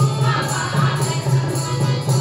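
A mixed group of voices sings a folk song in unison, accompanied by hand drums (dholak) keeping a steady rhythm and a harmonium.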